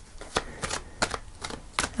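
A tarot deck being shuffled by hand: a string of irregular, quick card slaps and flicks.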